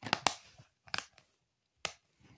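Plastic DVD keep case being snapped shut and handled: a cluster of sharp clicks at the start, another about a second in, and one sharp click near the end.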